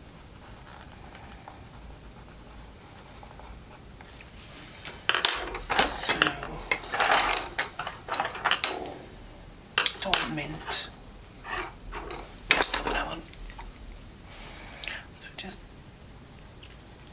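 Wooden coloured pencils clicking and rattling against one another as they are handled and picked through, in a run of clatters from about five seconds in until about thirteen seconds; the first few seconds are quieter.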